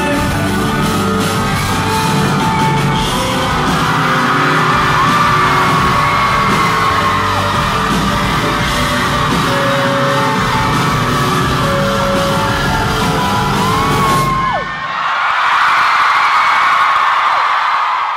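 Live pop-rock concert music from the stage under a loudly screaming, whooping audience. The music stops about fourteen and a half seconds in, leaving only the crowd screaming and cheering.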